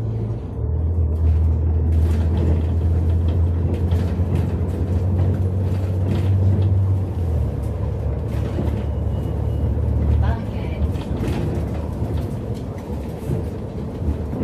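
Urbanway 18 articulated city bus under way, heard from inside by the doors: a loud, low engine drone that changes pitch in steps a few times, with rattles and knocks from the bodywork.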